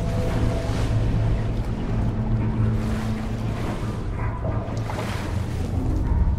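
Film sound effects of rough sea washing and churning around a capsized ocean liner's upturned hull, with wind and a steady deep rumble beneath.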